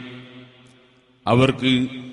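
A man's voice chanting with long held notes. The note at the start fades away over about a second, and the chant comes back in, holding a steady pitch again.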